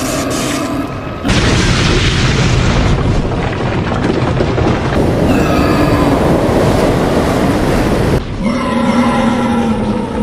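Animated giant boar monster's bellowing roar, then about four seconds of loud booming rumble. The bellowing returns over the rumble about five seconds in, and again near the end.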